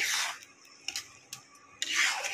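Steel spatula stirring a watery vegetable curry in a non-stick pan, scraping the pan's base: one swish at the start and another near the end, with a few light clicks in between.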